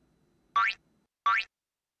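Two short cartoon boing sound effects, each a quick upward glide in pitch, about three-quarters of a second apart.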